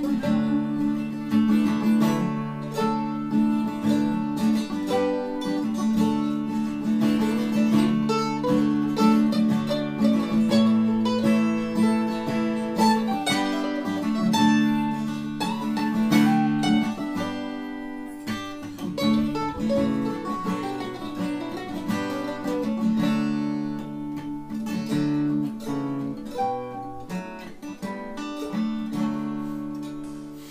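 Acoustic guitar and an eight-string mandolin-family instrument playing together, with sustained chords ringing. The playing grows quieter over the second half.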